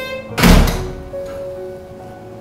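A single loud, deep thunk about half a second in, fading out quickly, over background music with long held notes.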